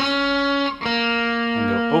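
Fender Stratocaster electric guitar, tuned down a half step to E-flat, playing two sustained single notes. The second note is slightly lower and starts after a short break just under a second in.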